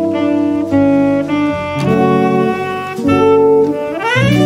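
A jazz quartet playing live. A tenor saxophone carries the melody in a run of held notes over upright bass.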